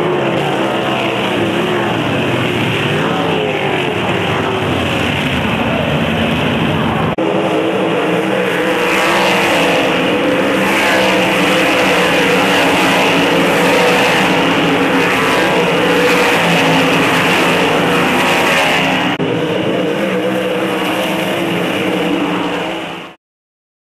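Winged 358 sprint cars with V8 engines running hard on a dirt oval, the engine note rising and falling as the cars go through the turns and down the straights. The sound changes abruptly twice, at cuts in the footage.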